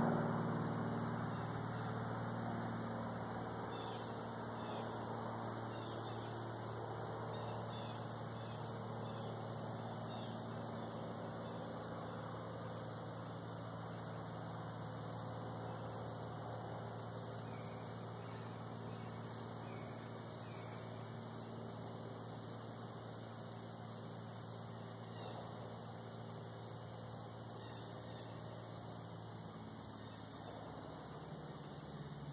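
Insect chorus chirping steadily: a high continuous trill and a slower, evenly repeating chirp. A low steady hum sits underneath, louder at the start and easing off over the first few seconds.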